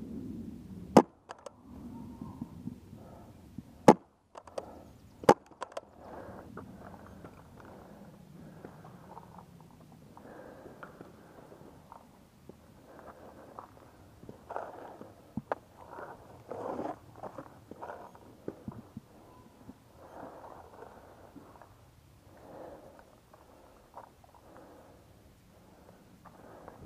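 Three sharp shots from a paintball marker fired close by: one about a second in, then two a second and a half apart around four and five seconds in. A long stretch of irregular rustling and handling noise follows.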